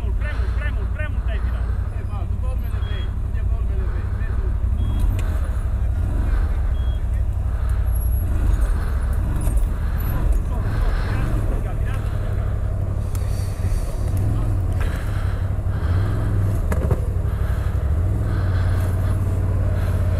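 CFMoto CForce 1000 ATV's V-twin engine running at low revs, with a few short rises in revs as the quad is worked through a steep, rutted gully.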